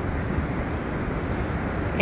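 Steady outdoor rush of ocean surf and wind on the beach, an even hiss with a low rumble underneath.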